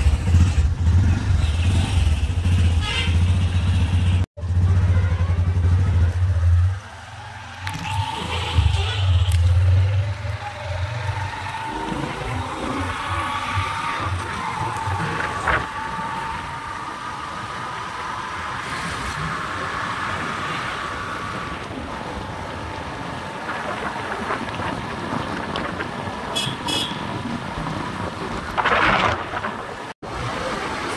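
Noise of riding along a road in a moving vehicle: a steady engine hum and rushing wind, with a heavy low rumble for the first ten seconds or so. After that comes an even road noise with a steady whine.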